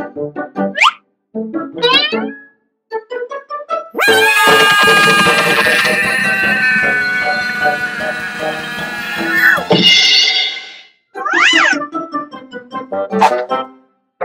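Cartoon soundtrack of music and comic sound effects: short springy pitch sweeps, then a long held sound of about six seconds that ends in a falling glide, followed by a quick wavering up-and-down whistle and a few sharp clicks near the end.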